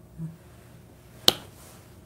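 A man's short, low "hmm", then a single sharp click a little over a second in.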